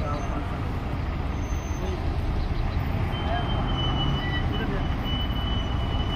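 Diesel city buses and traffic making a steady low rumble. A thin high tone comes and goes in the second half.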